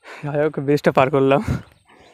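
A man's voice in a few short phrases, not clearly worded.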